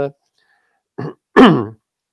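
A man clearing his throat: a short sound about a second in, then a louder one falling in pitch.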